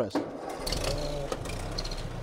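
A 1952 Ford 8N tractor's four-cylinder flathead engine is cranked on its starter. It catches almost at once, about half a second in, and settles into a steady idle.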